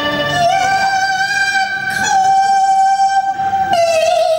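A woman singing in Cantonese opera style: she slides up into one long, high held note about half a second in and steps down to a slightly lower note near the end, over a light instrumental accompaniment.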